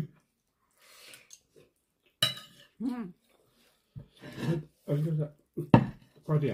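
Cutlery on a plate during a meal: it is almost quiet for the first two seconds, then a voice sounds briefly several times, and a sharp clink of a spoon on the plate comes near the end.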